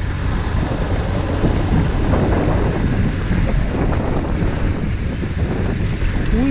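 Suzuki GD 110S single-cylinder motorcycle engine running steadily while riding along a dirt road, mixed with wind on the microphone.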